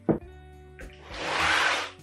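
Quiet background music, with a sharp knock just after the start and a loud rush of hissing noise lasting most of a second in the second half.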